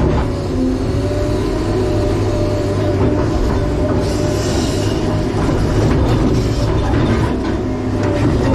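A Sany excavator's diesel engine running hard, heard from inside the cab, with a steady whine over it. Scrapes and knocks come from the bucket working in rock a few times.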